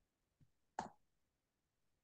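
Near silence, broken by one brief, soft sound just under a second in.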